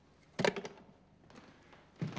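A telephone handset is set down at the end of a call, giving one short sharp clack about half a second in. A few faint taps follow.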